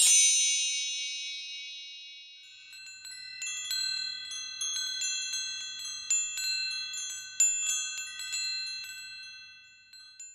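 Chimes used as a logo sound effect: one bright shimmering stroke at the start that rings and fades over a couple of seconds, then a long cascade of many high tinkling notes, like wind chimes, which dies away at the end.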